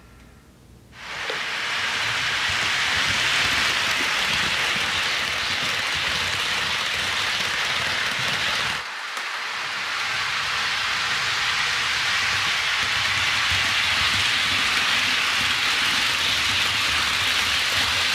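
HO scale model train rolling along sectional track: a steady hiss and rattle of wheels and cars. It starts about a second in and dips briefly about halfway through.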